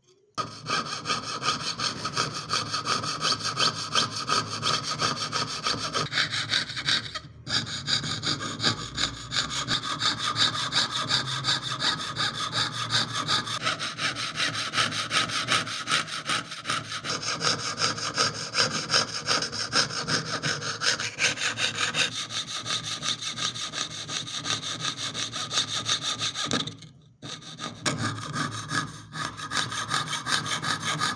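Jeweler's saw blade cutting through thin metal sheet in quick, steady back-and-forth strokes, piercing out the background of an engraved design. The sawing stops briefly about 7 seconds in and again near 27 seconds.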